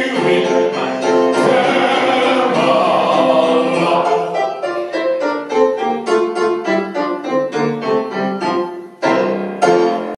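The end of a live show tune. A singer and piano-led accompaniment hold a long final note, then the accompaniment plays a run of short, detached chords as a playoff.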